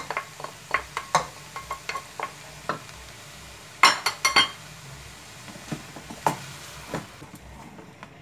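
Wooden spoon tapping and scraping grated carrot out of a glass bowl into a metal pot, then stirring it into shredded chicken, with many short knocks and clinks and a loud cluster of clinks about four seconds in.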